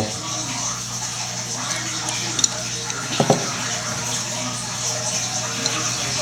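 Brass shower-valve fittings and short plastic pipe pieces handled by hand over a steady background hum, with two small clicks a little under a second apart near the middle as pieces are pulled off and set down.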